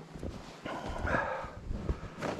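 Footsteps crunching in deep, packed snow on a forest trail, with a short vocal sound lasting about a second near the middle.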